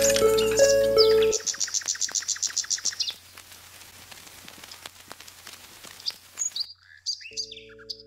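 Background music that stops about a second in, followed by a bird's rapid chirping trill lasting about two seconds, and a few short bird chirps near the end.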